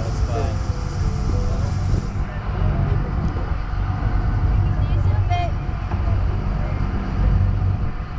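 Parasail boat's engine running with a steady low rumble, with faint voices over it; a high hiss stops about two seconds in.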